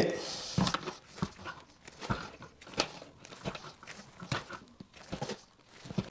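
Wire strippers working on the ends of household electrical wires: a string of faint, irregular clicks and scrapes as the plastic insulation is cut and pulled off the conductors.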